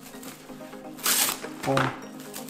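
Plastic cling film rustling as it is stretched over a stainless steel mixing bowl, with one brief crinkling burst about halfway through.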